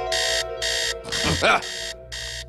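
Digital alarm clock beeping in quick repeated bursts, about three beeps a second, going off at 7:00 to wake a sleeper.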